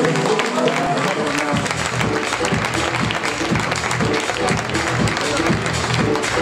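A group applauding, hands clapping rapidly and unevenly, with music that has a steady beat coming in about a second and a half in.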